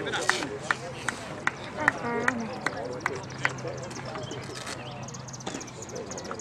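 Indistinct voices of players and spectators around a baseball field, with scattered sharp clicks and knocks.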